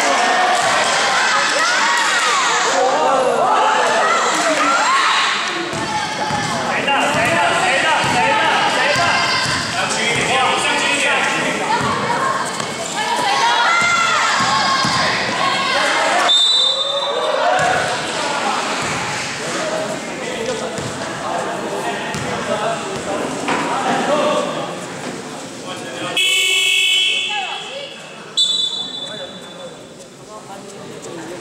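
Indoor basketball game: players and people courtside shouting and calling out over the ball bouncing on the court. Near the end a buzzer sounds for about a second, and short high whistle blasts come around the middle and just after the buzzer.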